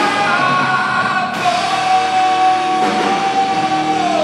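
Live rock band playing electric guitar, bass guitar and drums, with a singer; a long note is held through the second half.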